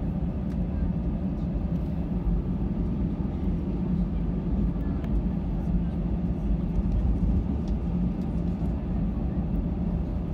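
Airbus A320 cabin noise while taxiing: a steady low rumble from the engines at taxi power and the airliner rolling along the taxiway, heard from inside the cabin.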